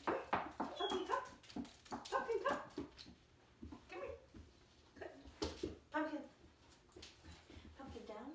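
Goldendoodle puppy whimpering and giving short yips, several separate calls a second or two apart.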